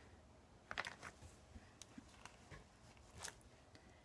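Near silence with a handful of faint, scattered clicks and taps from a clear acrylic stamp block being pressed onto masking tape over a plastic sheet.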